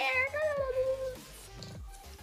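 A girl's drawn-out, whiny vocal cry lasting about a second, wavering and then falling slightly, with background music with a steady beat underneath.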